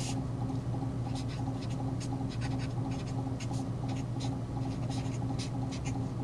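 Felt-tip marker writing on paper: a series of short, scratchy strokes, over a steady low hum.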